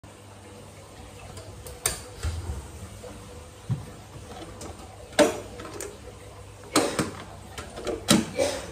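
A few sharp knocks and clicks from kitchen things being handled on a counter. The loudest comes about five seconds in and two come close together near the seven-second mark, over a low steady hum.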